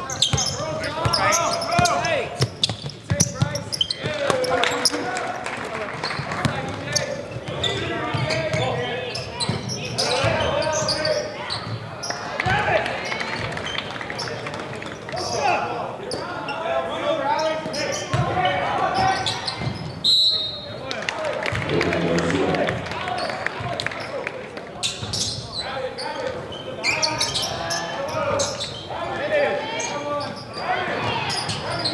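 Live basketball game in a gym: a basketball being dribbled on the hardwood court, under a steady din of players' and spectators' voices calling and shouting over each other. A brief high squeak sounds about two-thirds of the way through.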